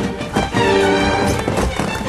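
Music, with short knocks over it, about a third of a second in and again about a second and a half in.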